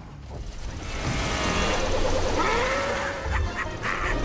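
Animated film soundtrack: a rush of noise swells from about half a second in, followed by vehicle sounds with music and a short gliding call about two seconds in.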